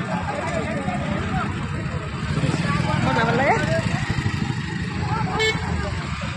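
Several voices talking and calling out over one another at a roadside, over a steady low rumble. A brief high beep comes near the end.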